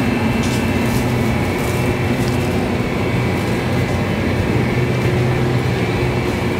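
Steady background noise inside a convenience store, an even rushing sound with a low hum, as the shop's machinery runs while the phone is carried through the aisles.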